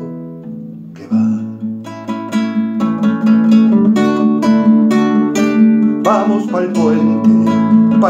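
Nylon-string classical guitar: a chord rings and fades for the first second, then strumming starts again and grows louder, carrying on steadily as an instrumental passage between sung lines.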